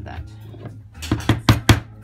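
A small hammer taps a nail into the work board about five times in quick succession, about a second in. The nail holds a cut glass piece and its lead came in place during leaded glass assembly.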